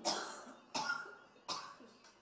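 Three short coughs, about three quarters of a second apart, each starting sharply and fading quickly.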